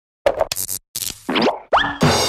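Animated-logo cartoon sound effects: several quick pops in the first second, then two fast upward-swooping pitch glides near the end.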